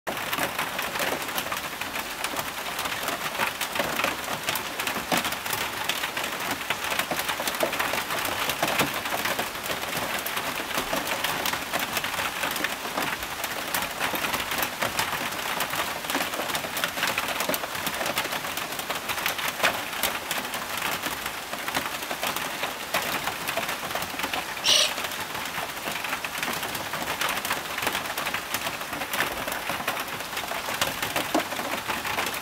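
Steady rain falling, with a dense patter of drops. One brief high-pitched sound about 25 seconds in.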